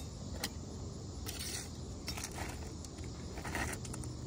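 Light metallic clicks and rattles of a steel tape measure being picked up and its blade pulled out across the shingles.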